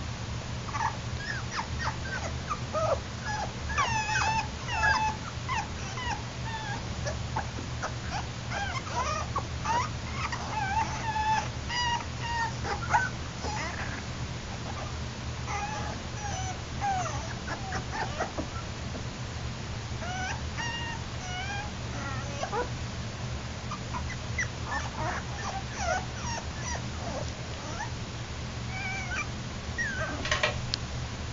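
Yorkshire Terrier puppies whimpering in many short, high squeaks, over a steady low hum.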